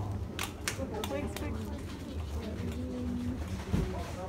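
Indistinct background voices over a steady low hum, with a few sharp clicks in the first second and a half.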